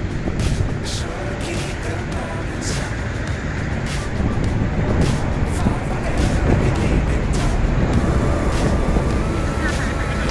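Road traffic passing along the road, a steady rumble with frequent short crackles, growing somewhat louder through the second half.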